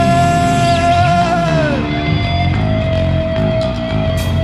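A rock band playing loudly live, with a long held high note that slides down in pitch about a second and a half in, followed by another held note.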